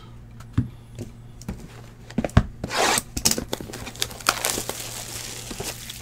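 Trading cards and a card box being handled on a table: a couple of light knocks, then crinkling and tearing of wrapping about two and a half seconds in, followed by many small clicks and rustles.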